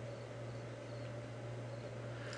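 Steady low electrical hum with faint hiss: the recording's background noise, with no distinct sound event.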